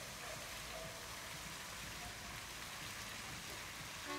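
Steady splashing of water from a fountain's jet falling back into its basin.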